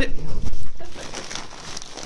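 Dogs scuffling over gift-wrapped presents: bumps and rustling of wrapping paper, loudest in the first half-second.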